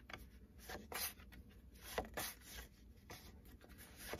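Stiff paper flashcards handled and slid against one another: a series of faint, short paper swishes and light taps, the sharpest about halfway through.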